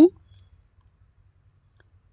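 A man's voice cuts off just after the start, then a pause of near silence with only a faint low hum and a tiny click or two.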